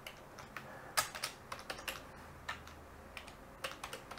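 Computer keyboard being typed on: faint, irregular keystrokes, a dozen or so spread across the few seconds, with a short cluster near the end.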